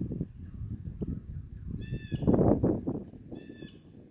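A bird calling twice in short, harsh calls, about a second and a half apart, the second near the end. Between them comes a louder, brief rush of low noise.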